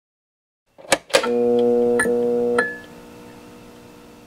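A short intro jingle: two sharp clicks, then a held musical chord, struck again twice, that fades away after about two and a half seconds.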